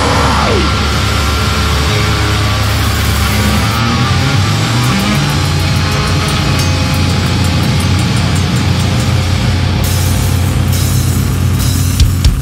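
Live heavy band music: a steady, loud wall of distorted guitar and bass noise with no drum beat, after a falling pitch glide in the first half second.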